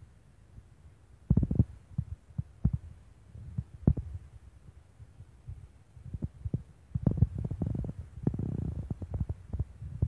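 Irregular low thumps and rumbling on the microphone, the kind made by wind buffeting or handling a phone held near a waterfall. They come in clusters about a second and a half in, near four seconds, and again from about seven seconds on, with quieter low rumble between.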